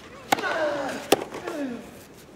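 Two tennis ball strikes off a racket, under a second apart, each followed by a player's grunt that falls in pitch.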